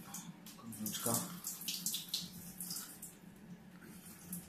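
Water splashing and dripping into a bathtub as the wet media basket of an Aquael Unimax 250 canister filter is lifted out of the canister, in short irregular splashes over a steady low hum.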